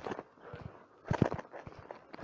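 A series of irregular knocks and clicks in small clusters, roughly one cluster a second, like hard objects or steps on a hard surface.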